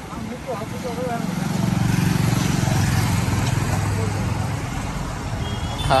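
Small camera drone's propellers buzzing close by, the buzz swelling about a second and a half in and holding steady before easing off near the end.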